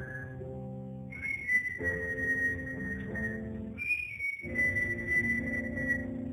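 Instrumental music: an electronic keyboard plays sustained chords under a high, whistle-like melody in long held notes. The phrases break off briefly twice.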